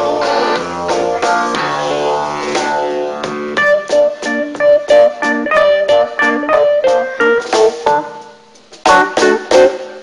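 Rock band playing an instrumental break on electric guitar, bass, electric keyboard and drums. It starts as full sustained chords; from about three and a half seconds in it breaks into short stabbed chords, roughly two or three a second, with gaps between. It thins out near the end before a last couple of hits.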